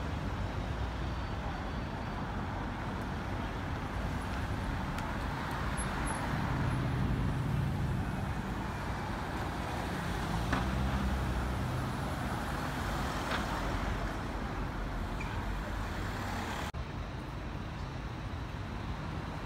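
City road traffic: cars and a double-decker bus running past, a steady rumble with engine noise swelling twice in the middle.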